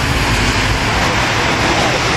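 Steady hiss and low rumble of city street traffic, with no distinct events.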